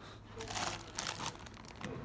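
Plastic parts bags crinkling as they are handled, in a burst of about a second near the start, with a short click near the end.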